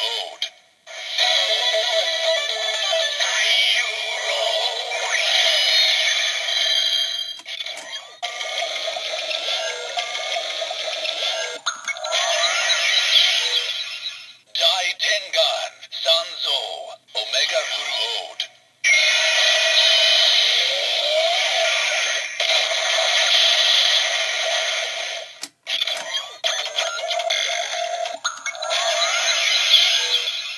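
Bandai DX Mega Ulorder toy playing its electronic sound effects through a small built-in speaker: spoken voice call-outs, a sung chant and music jingles, thin and tinny with no bass. It runs as several sequences separated by brief silences as the buttons are pressed again.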